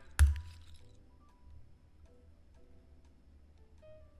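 A sharp click just after the start, then faint background music from the online blackjack game, with a few short clinks near the end as casino chips are placed on the bet.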